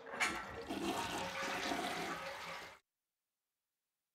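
Toilet flushing: a steady rush of water that starts suddenly just after the beginning and cuts off abruptly after about three seconds.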